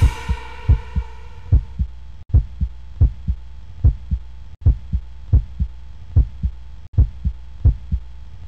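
Heartbeat sound effect: slow paired low thumps, lub-dub, about 75 beats a minute, over a faint steady high tone. The dance music's echo dies away in the first second.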